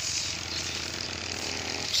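Steady, even machine noise from a tractor being cleaned by blowing air through its grilles to clear chaff out of them.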